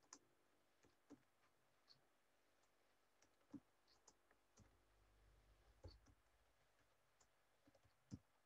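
Near silence: room tone with faint, irregular clicks from computer use at a desk, and a soft low rumble about five seconds in.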